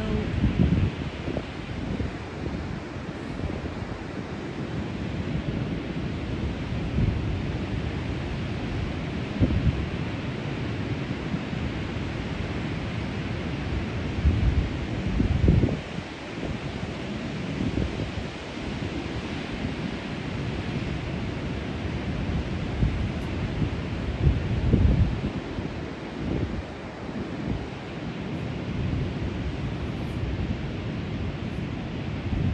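Ocean surf breaking and washing up the beach in a steady rush, with wind buffeting the microphone in gusts, strongest about 15 and 25 seconds in.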